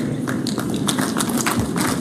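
Audience applauding: many hands clapping in a dense, even spread of claps.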